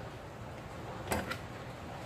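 Two light knocks on a plastic cutting board about a second in, the second softer and about a fifth of a second after the first, as a banana-leaf-wrapped cake and the knife are handled on it, over a faint steady room hum.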